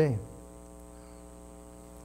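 A faint, steady musical note held for under two seconds with several even overtones and no change in pitch, sounded as the starting pitch for a hymn. The last word of a man's speech fades out just at the start.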